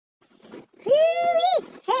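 A person's drawn-out, high-pitched "ooh" exclamation at the biting cold, lasting about two-thirds of a second, followed by the start of speech.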